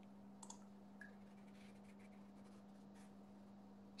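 Near silence with a few faint computer mouse clicks over a faint steady hum, as screen sharing is started on a computer.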